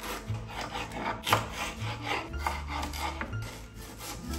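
Kitchen knife slicing through a red onion onto a bamboo cutting board: a quick, uneven series of crisp cuts, each ending in a light tap of the blade on the wood.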